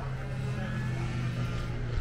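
Kart engines running on the track, a steady engine drone.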